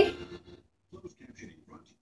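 A girl's laughing voice trailing off, then a few faint murmured vocal sounds, cut off into silence near the end.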